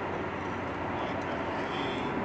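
Steady car cabin noise: an even rumble and hiss of a moving car, with a constant low hum under it.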